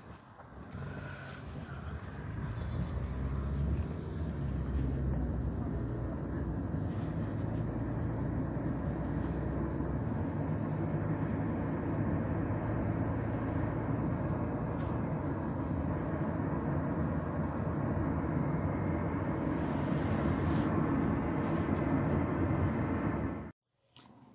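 Steady low rumble of a car driving, heard from inside the cabin: engine and road noise that builds over the first few seconds, holds steady, then stops abruptly near the end.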